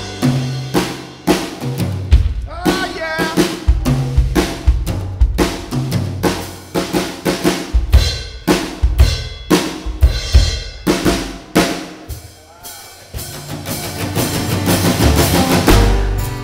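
A Yamaha drum kit playing a busy break of rapid kick, snare, rimshot and cymbal hits, with a low bass part underneath. It drops back briefly about twelve seconds in, then builds again.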